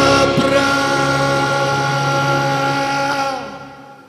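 Recorded musical-theatre song with singing over sustained backing music, holding one long chord before fading out near the end.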